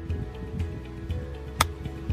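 A golf club striking the ball: one sharp click about one and a half seconds in, over background music.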